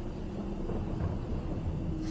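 Steady, low rumbling ambient soundscape bed of a dark horror ambience track, with no sudden events.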